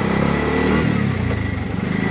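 A tuk-tuk's small engine running as it drives, heard from inside the cab, its engine note shifting in pitch within the first second.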